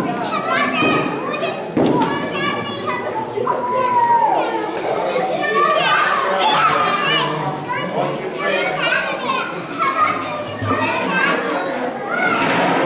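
Children playing and calling out over overlapping chatter in a large hall.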